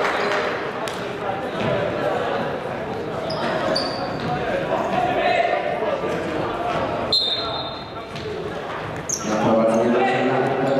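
Futsal match in a large hall with echo: the ball thudding off feet and the wooden floor, a few short shoe squeaks on the hardwood, and players' voices calling out.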